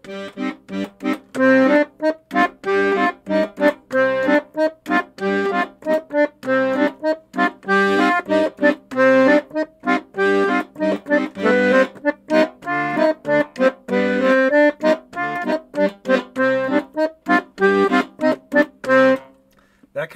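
Piano accordion playing a C minor bolero (rumba) pattern: left-hand bass notes and chords with a right-hand scale line, every note short and detached, stopping about 19 seconds in.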